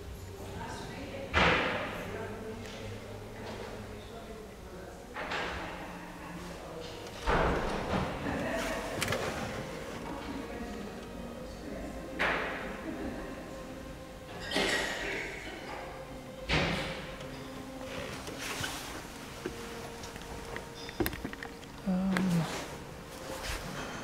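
About six heavy thuds at irregular intervals, each leaving a long echo in a large stone church interior, over a faint murmur of background voices.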